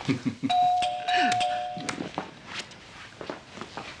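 Two-tone room doorbell chime: a held higher note about half a second in, joined by a lower note, both stopping together about a second and a half later. It is preceded by a woman's short laugh.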